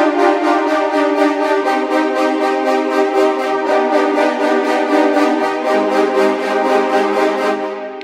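Sampled horn ensemble from Orchestral Tools' Metropolis Ark 3 playing a chord as rapid repeated notes, about six a second. The chord changes three times, and the last notes fade out near the end.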